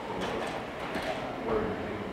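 A slide projector advancing to the next slide: a quick run of mechanical clicks in the first second, over low talk in the room.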